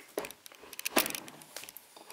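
Handling noise as the camera is lifted and moved: a few short, light clicks and knocks, the loudest about a second in.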